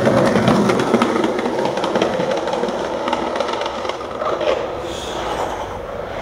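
Skateboard wheels rolling fast downhill on rough pavement: a steady rumble with rapid clicking over cracks and grit, slowly fading over the last few seconds.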